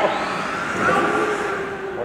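Radio-controlled model car driving, its motor giving a steady whine that dips slightly in pitch.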